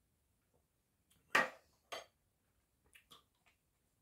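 Tableware handling: a sharp clack of a metal spoon about a second and a half in, a lighter knock half a second later, then a few faint ticks as the glass sauce bottle is handled.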